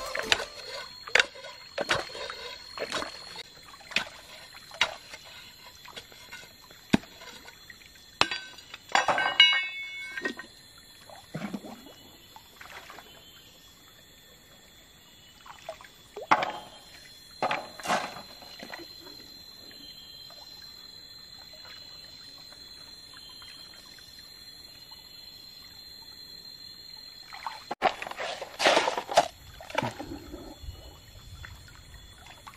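Stream water sloshing and splashing as an iron bar is worked into the gravel bed and sediment is scooped up by hand. Sharp knocks of the bar on stones come in the first ten seconds, and bursts of splashing follow later.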